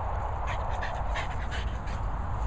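French bulldog breathing hard after running, quick short breaths in a rapid run, while carrying a rubber ring toy in its mouth.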